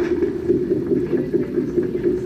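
A steady, low, rumbling drone with a rough texture, from a TV show's soundtrack playing in the room.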